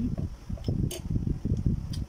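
A metal spoon clicking against a ceramic bowl, sharply once about a second in with fainter clicks around it, over a continuous low rumbling noise.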